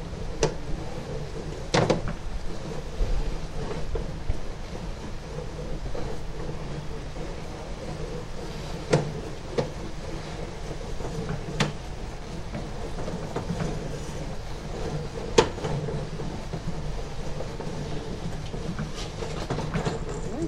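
Sewer inspection camera's push cable being hauled back out of the line: a steady rumbling, rubbing noise with a few sharp clicks and knocks scattered through it.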